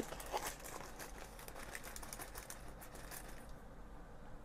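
Faint rustling and crinkling with small scrapes, from handling the paper bag of masa harina and scooping the flour into a plastic bowl; it stops about three and a half seconds in.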